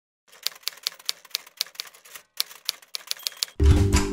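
Mechanical typewriter keys striking in quick, slightly uneven succession, about four strikes a second, for some three seconds. Near the end a held music chord with a low hit comes in.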